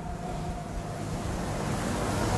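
Steady background hiss in a pause between spoken phrases, with a faint echo of the voice dying away at the start.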